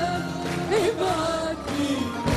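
A woman singing an Arabic song live with a band, her voice holding notes that waver and turn in ornamented runs over the accompaniment.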